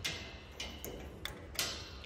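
A padlock being handled on a metal gate latch, giving a few light, separate metallic clicks and taps.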